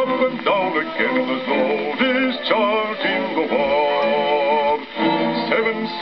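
An old 78 rpm shellac record playing on an acoustic gramophone: a bass singer with orchestra, the sound thin and cut off at the top as old records are, with notes that slide up and waver.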